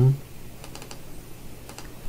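Computer keyboard keystrokes: a few light, scattered clicks as text is entered into a form field.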